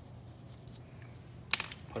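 A sharp tap about one and a half seconds in, with a lighter one just after: a coloring stick set down and another picked up from the tabletop while switching from gray to white, after faint quiet rubbing.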